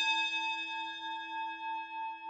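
A single struck bell-like chime ringing on and slowly fading, its loudness wavering slightly: a transition sound between the conversation and a sponsor segment.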